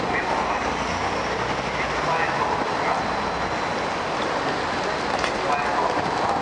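Busy city street ambience: steady traffic noise with indistinct voices of passers-by mixed in.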